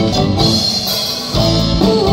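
Live band playing an instrumental passage through a PA, with drum kit, bass and guitar. The low end thins out briefly and the full band comes back in about a second and a half in.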